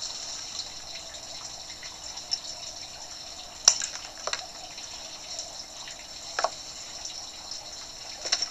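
A few sharp clicks and taps of hand tools and copper wire being handled, the loudest about three and a half seconds in, over a steady background hiss.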